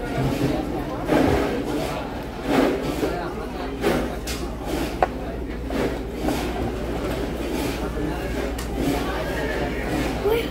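Restaurant dining-room noise: indistinct voices and chatter, with a few short sharp clicks of forks and dishes (the sharpest about five seconds in), over a steady low hum.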